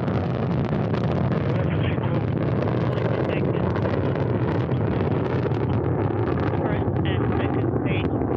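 Soyuz rocket's first-stage engines, the core stage and its four strap-on boosters, at full thrust in the first seconds of ascent: a steady, deep rumble that holds at one level.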